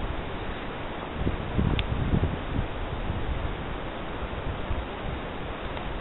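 Wind on the camcorder's microphone: a steady rushing hiss with uneven low gusts, and one faint click about two seconds in.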